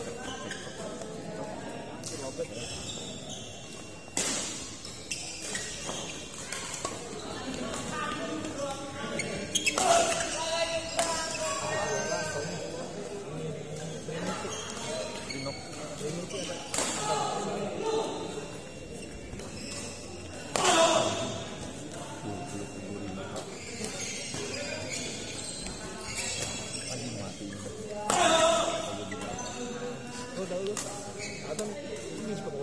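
Badminton rally sounds in a large echoing hall: sharp racket hits on the shuttlecock over a steady bed of crowd chatter and play from neighbouring courts. Loud shouts break in three times, about a third of the way in, past halfway and near the end.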